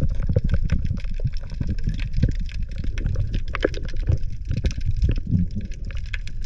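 Underwater sound heard through a submerged camera: a low, muffled rumble of water movement as a spearfisher moves and handles a speared sea bream on the shaft, with many scattered sharp clicks and crackles throughout.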